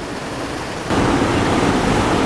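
Steady rushing wind and water noise on the open deck of a moving river cruise boat, with no distinct events; it jumps abruptly louder about a second in.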